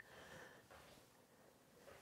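Near silence, with a few faint, soft breaths.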